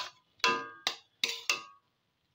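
Metal spatula knocking against the side of a metal kadai while stirring greens: about five ringing clanks in quick succession, stopping suddenly near the end.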